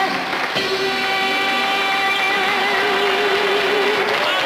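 A singer holding one long closing note with a gentle vibrato over a steady band accompaniment, the final note of the song.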